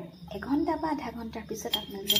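A metal spoon clinking against a glass jar of sugar mixture near the end, one sharp clink with a brief high ring.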